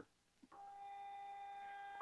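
Faint, steady electronic hum on a video-conference audio line, a single pitched tone with a ladder of overtones, coming in about half a second in.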